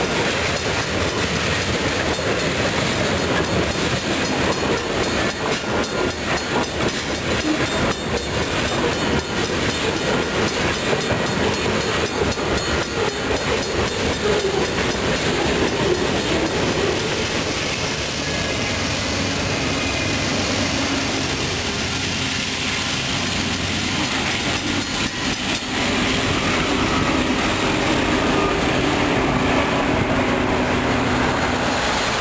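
Freight train cars rolling past, the wheels clacking steadily over the rails; the sound changes in the last few seconds.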